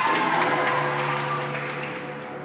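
Spectators cheering and clapping for a just-landed tumbling pass, loudest at the start and fading, over floor-exercise music with steady held notes.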